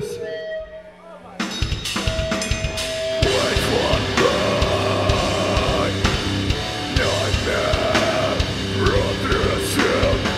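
Live hardcore/metal band starting a song: after a short, quieter moment with a held note, drums and distorted guitars come in at full volume about a second and a half in. Shouted vocals join about two seconds later.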